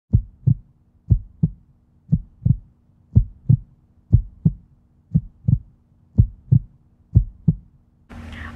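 Heartbeat sound effect: deep double thumps, lub-dub, about once a second, eight beats in all, over a faint steady low hum.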